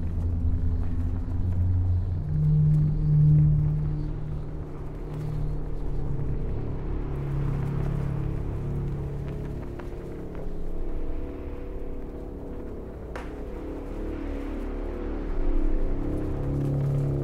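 Dark ambient drone music: low sustained tones that shift to new pitches every few seconds over a steady rumble.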